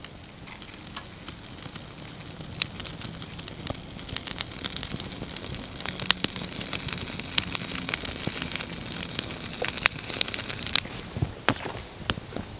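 Wood shavings and curls burning in a small metal firebox, crackling and popping with a rising hiss. The fire grows louder about four seconds in as it catches.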